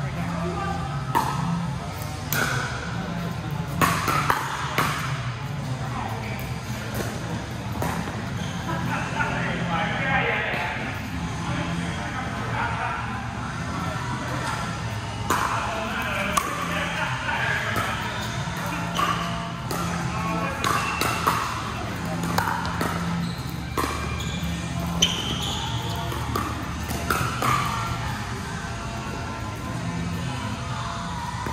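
Pickleball rallies: a paddle striking a plastic ball gives sharp, irregular pops, several a few seconds apart and some in quick exchanges, over background music and voices in a large indoor hall.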